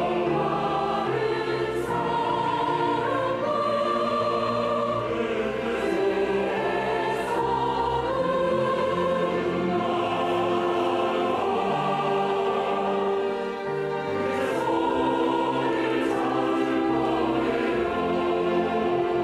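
Large mixed choir of adults and children singing a Korean sacred song with orchestral accompaniment of strings and keyboard.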